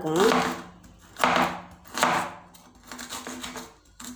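Kitchen knife slicing a red onion on a wooden chopping board: several separate cuts about a second apart, each a short crunch through the onion ending on the board.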